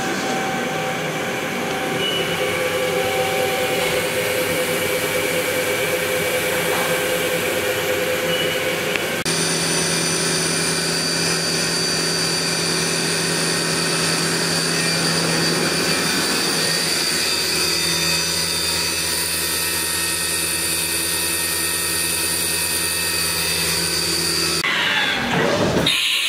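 Haas VF-2 vertical machining center spindle running at steady commanded speeds, with a high whine. The sound changes sharply about nine seconds in and again about seventeen seconds in as the spindle-speed program steps it up toward 10,000 rpm. It breaks off a second before the end.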